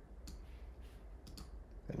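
A handful of faint, light computer-mouse clicks, two of them in quick succession near the end, as an item is picked from a list in a dialog.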